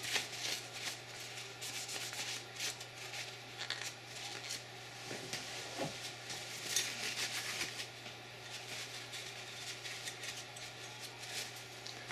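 Paper towel rustling and rubbing against the stainless double slide of a dual-barrel .45 ACP pistol as it is wiped clean of carbon: scattered soft crinkles and scrapes over a steady low hum.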